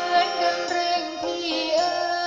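A song: a single voice singing a melody with held, gliding notes over instrumental accompaniment with plucked strings.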